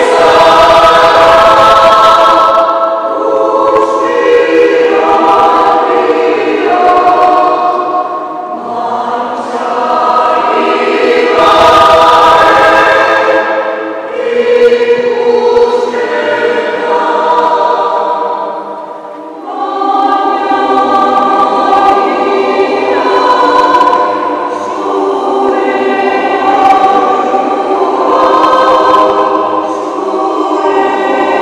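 Mixed choir of men's and women's voices singing sustained chords in a church, phrase after phrase, with a brief lull about two-thirds of the way through before the singing picks up again.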